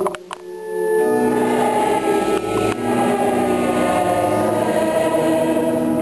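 Church choir singing a liturgical chant at Mass in long held notes. A couple of sharp clicks and a brief drop come right at the start, before the singing swells back in.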